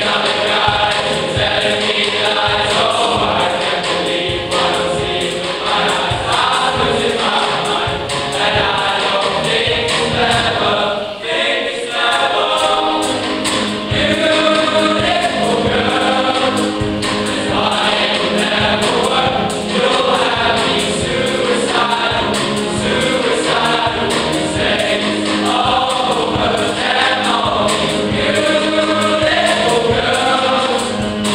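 A boys' choir singing in parts, with a short break about eleven seconds in, after which lower voices hold steady notes beneath the melody.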